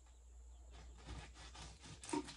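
Faint crackling of a knife sawing through the crisp wrapper of an air-fried egg roll on a wooden cutting board, over a low steady hum.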